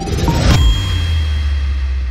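Electronic logo sting: a swell of noise leads into a bright chime hit about half a second in, with a deep bass boom under it. The chime and the bass ring on, slowly fading.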